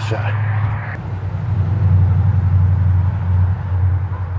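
A steady low rumble that grows louder about a second in and holds.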